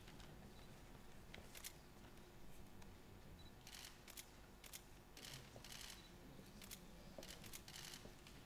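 Camera shutters clicking: about ten short, sharp clicks at irregular intervals, mostly bunched together in the second half, over the faint hush of a large hall.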